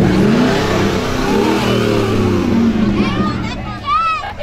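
Chevrolet SSR's V8 engine revving as the truck passes close by: the note rises at the start, then holds steady and fades after about three seconds. Near the end, a spectator's shout.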